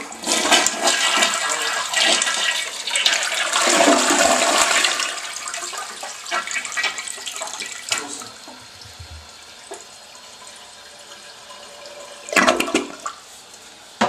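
Toilet flushing: a loud rush of water for about five seconds that fades as the bowl drains, then a quieter steady hiss of the tank refilling. A brief loud noise breaks in near the end.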